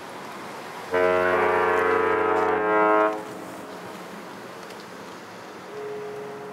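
Large ship's horn sounding one long, deep blast of about two seconds. A fainter horn tone starts near the end.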